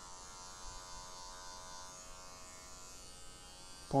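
Electric hair clipper running with a steady buzzing hum as it cuts short hair at the back of a head during a fade.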